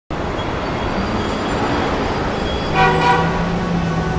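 Added soundtrack opening: a steady rushing noise like city traffic, then a horn-like toot about three seconds in, with a low held note that carries on into music.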